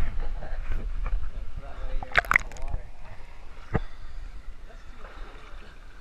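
Swimming-pool water sloshing and splashing close to the camera at the waterline, with a short loud burst about two seconds in and a single sharp knock near four seconds.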